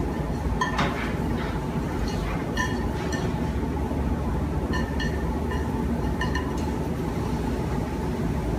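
Wooden chopsticks tapping and scraping against a nonstick frying pan while shaping an omelette, a scatter of light clinks over a steady low background hum.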